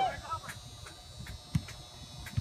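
A spectator shouts "Oh, Stella" at the start, then the field goes quieter, with a faint steady high whine and one dull low thump about one and a half seconds in.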